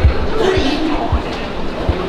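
A Seoul Subway Line 2 train at the platform behind the screen doors, rumbling, with a few low knocks as its wheels cross rail joints. The strongest knock comes right at the start.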